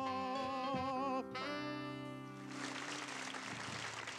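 A male singer holds the song's last note with a wide vibrato and cuts it off about a second in, while the band's closing chord rings on. Audience applause starts about halfway through and carries on to the end.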